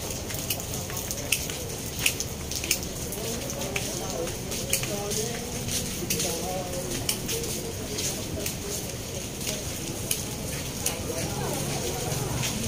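Busy market street ambience: faint background chatter from passers-by over a steady hiss, with scattered sharp ticks and clicks.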